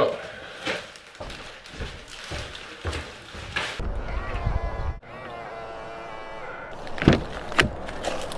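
A snatch of music with held notes, followed near the end by a car door being unlatched and opened with a couple of sharp clunks.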